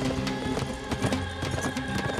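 Music with sustained low notes, over a herd of horses galloping, with dense hoofbeats.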